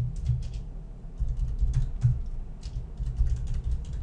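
Typing on a computer keyboard: quick key clicks with dull low thumps, coming in short runs with brief gaps.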